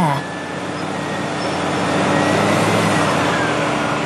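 Wheel loader running as it works a pile of sugarcane bagasse: a steady engine noise that swells slowly louder towards the middle, with a faint whine that rises and then falls in pitch.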